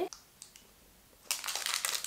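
About a second of near silence, then the plastic wrapper of a caramel-and-peanut chocolate bar crinkling as it is handled and peeled back.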